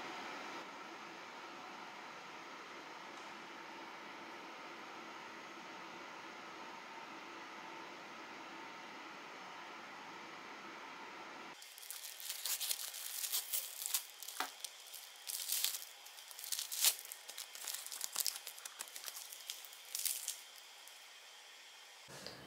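A steady hum with several faint steady tones, then, from about halfway through, the plastic wrapper of a triangle rice ball (onigiri) being torn open by its tab and pulled apart, crinkling in quick irregular bursts for about eight seconds.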